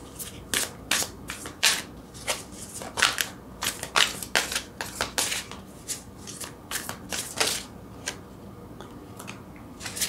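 A deck of tarot cards shuffled in the hands, the cards tapping and slapping together in quick, irregular clicks that thin out near the end.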